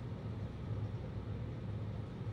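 Steady low hum of room noise, even throughout, with no distinct events.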